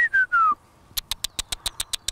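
Three short falling whistles, a person whistling to call chickens in to feed, followed about a second later by a quick, even run of sharp clicks, about eight a second.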